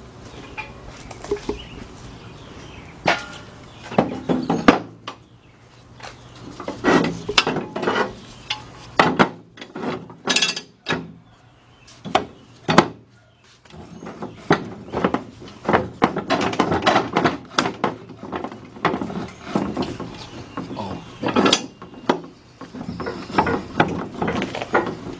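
Steel jack stands being set and adjusted under an engine block on a wooden beam: a run of irregular metallic clanks, clinks and knocks against metal and wood, with two brief lulls.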